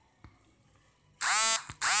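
Near silence, then two short, loud, buzzy electronic tones a little over a second in, each opening with a quick drop in pitch: a mobile game's sound effects.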